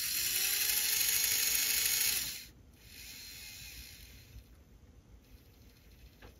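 Small electric motor and worm-gear drive of an HO scale 0-4-0 steam locomotive model running with a steady high whine, no longer rubbing now that the end of the motor shaft has been filed down; it cuts off suddenly a little over two seconds in.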